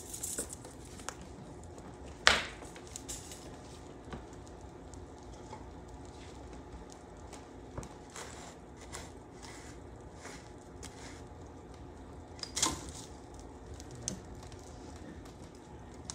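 Split oak firewood being handled and set into a wood-burning fireplace insert, with a sharp knock a couple of seconds in and another near the end. Small clicks and crackles of the burning fire come in between.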